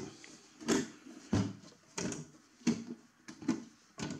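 A loose high-voltage ferrite-core transformer knocking inside the case of a mini electro-surgical unit as the unit is tilted back and forth, five knocks about two-thirds of a second apart. The transformer's mounting bolts are badly loose, so the heavy part bangs around inside.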